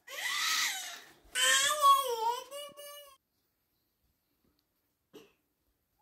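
A baby crying: two wails, a short one and then a longer one with a wavering pitch that stops about three seconds in.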